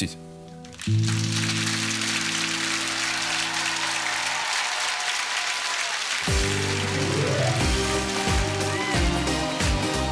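Studio audience applauding over a held music chord, then a song's instrumental intro with a steady beat starts about six seconds in as the clapping goes on.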